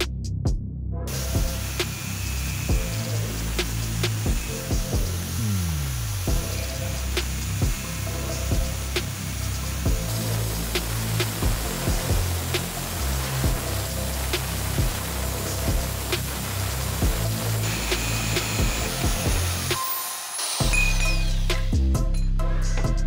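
Angle grinder with a cut-off disc cutting through a steel pipe, starting about a second in, running steadily and stopping shortly before the end, over background music.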